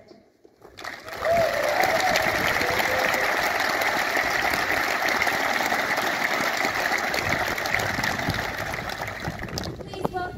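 An audience applauding: a dense, steady patter of many hands that starts about a second in, holds at an even level and eases slightly near the end.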